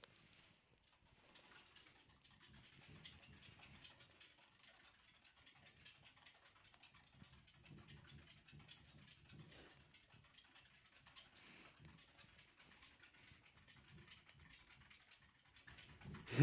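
Very faint nibbling and crunching of pet degus eating nut pieces from a hand: scattered soft clicks with near silence between them.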